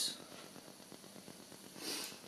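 Quiet room tone in a pause between spoken lines, with a short breath drawn in just before the end.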